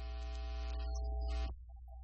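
Steady low electrical mains hum with a held chord of several steady tones over it. The chord cuts off suddenly about a second and a half in, leaving the hum.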